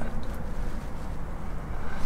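Low, steady rumbling background noise with no distinct events.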